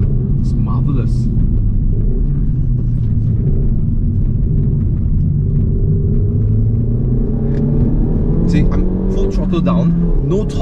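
Renault Mégane RS 280's turbocharged 1.8-litre four-cylinder engine, heard from inside the cabin over road rumble: steady at first, then rising in pitch from about halfway as the car accelerates.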